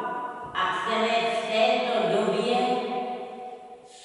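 An elderly woman's voice, with long, drawn-out held tones, fading near the end.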